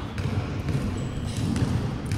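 Basketballs bouncing on a hard indoor court floor, a dull low thudding.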